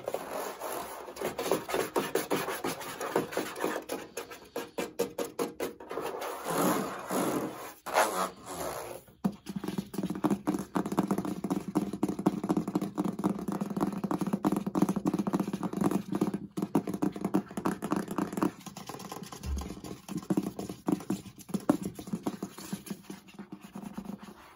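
Fingers rapidly tapping and scratching on the conical base of a Dreo fan: a dense, continuous run of fast strokes, with a brief lull about eight seconds in.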